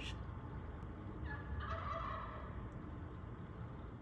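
A wild turkey calls once, starting about a second in and lasting about a second and a half, over a low steady background rumble.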